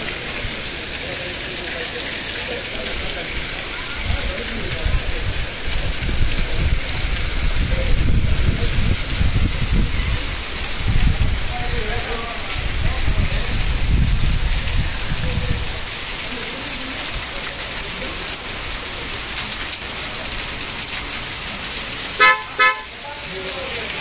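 Heavy rain falling steadily on a street, with a low rumble that swells through the middle and fades. Near the end a vehicle horn gives two short toots.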